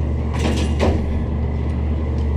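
Otis traction elevator car running, a steady low hum of the car in motion, with a few light clicks about half a second and just under a second in.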